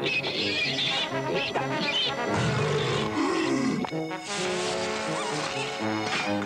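Cartoon soundtrack music with cartoon sound effects over it, among them an animal-like voice whose pitch wavers up and down for about a second and a half in the middle.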